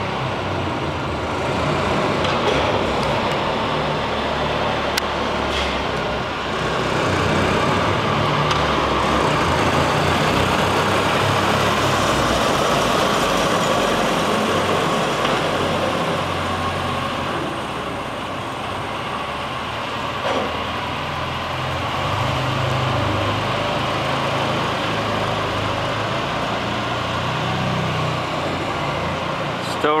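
The engine of a restored vintage four-speed baggage cart runs steadily as the cart drives along, growing louder about seven seconds in as it comes closer.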